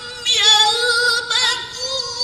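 A teenage girl's voice reciting the Qur'an in the melodic tilawah style: after a brief breath-pause she holds long, ornamented notes with a wavering pitch.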